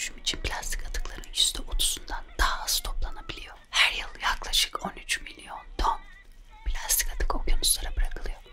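A woman whispering close into a condenser microphone, ASMR style, in short breathy phrases.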